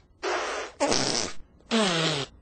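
Children blowing raspberry-style fart sounds by pushing air out of puffed-up cheeks with their fingers, lips flapping: three short sputtering bursts one after another, the last one buzzing and dropping in pitch.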